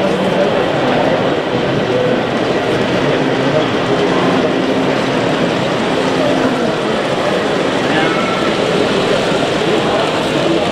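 Steady babble of many voices from a crowd at a model railway exhibition hall, with no single voice standing out.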